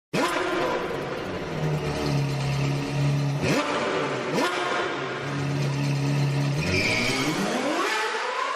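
Sports car engine sound effect in a produced logo sting: the engine runs at high revs with shifts in pitch, two sharp rising whooshes, and a rising siren-like wail near the end.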